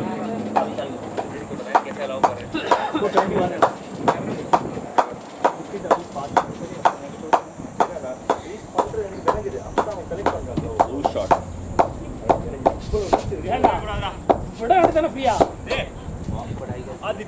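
Steady hand clapping, sharp claps about twice a second, with distant voices chattering between them.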